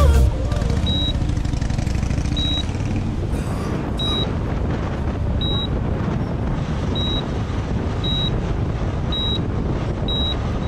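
Wind rush and the low rumble of a Harley-Davidson V-twin motorcycle being ridden at road speed, heard from the rider's helmet camera. A short, high beep repeats about once a second throughout.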